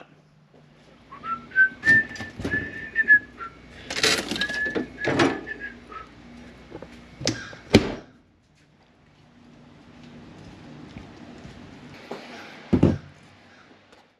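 A man whistling a short tune for a few seconds, with several sharp knocks and thunks of handling and footsteps around it. After a quieter stretch, a single thud comes near the end.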